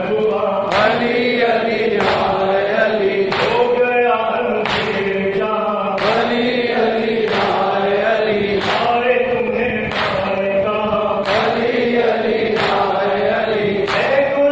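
A large group of men chanting a mourning lament (nauha) in unison. A sharp collective strike lands about every 1.3 seconds in time with the chant, consistent with the hand-on-chest beating of matam.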